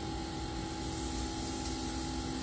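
Steady background hum and hiss, with a faint constant tone running through it.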